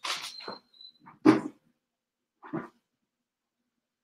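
Three short, sharp animal calls, like a small dog's barks, with the second, about a second in, the loudest.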